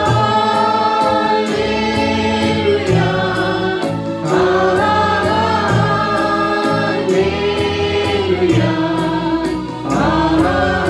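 Small mixed worship group, women's voices leading with a man's, singing a Telugu Christian worship song together into microphones, over accompaniment with a steady beat.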